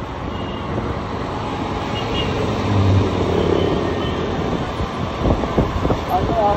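Steady engine and road noise heard from the back of a moving motor scooter in light city traffic, with wind rushing over the microphone. There is a brief low hum about three seconds in, and a few low thumps near the end.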